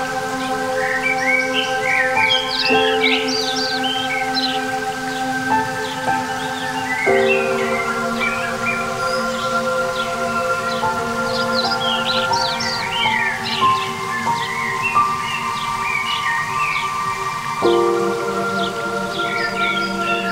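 New-age instrumental music: sustained electronic chords that change about three, seven and seventeen and a half seconds in, with birdsong chirping over them.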